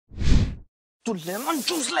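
A short whoosh sound effect with a heavy low end, lasting about half a second, then, about a second in, a voice saying a brief phrase.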